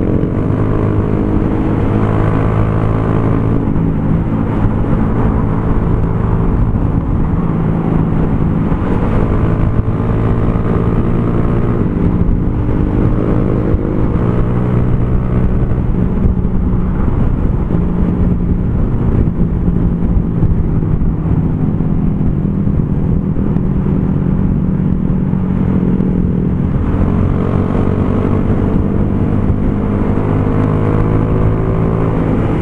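Honda CG Fan 150 single-cylinder engine running steadily at cruising speed through a Torbal Racing aftermarket exhaust, its note shifting slightly a few times as the throttle changes, with wind rush on the helmet microphone.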